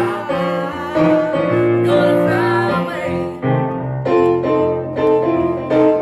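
A man and a woman singing a gospel song together, the man accompanying on an electronic keyboard with piano-sound chords.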